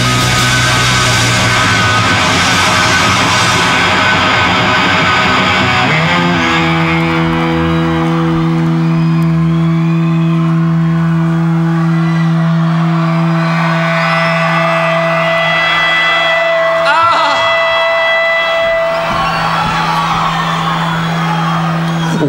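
Live punk rock band (electric guitar, bass and drums) playing loud for about six seconds, then breaking off while a single electric guitar note is held and rings on as steady feedback for about fifteen seconds, a second higher tone joining partway. The full band comes crashing back in at the very end.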